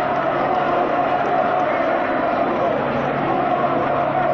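Large marching street crowd: many voices blend into a steady, unbroken wash of noise.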